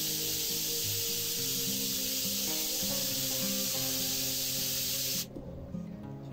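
Steady hiss of corona discharge from a three-stage high-voltage ion thruster running, cutting off suddenly about five seconds in. Background music plays throughout.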